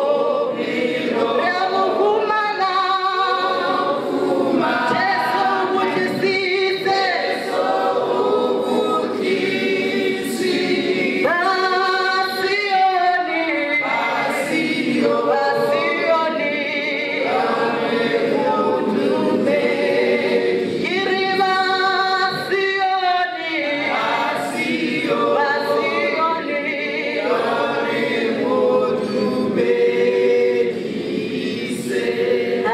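A small group of men and women singing together without accompaniment, one woman singing into a microphone over the PA, in phrases a few seconds long.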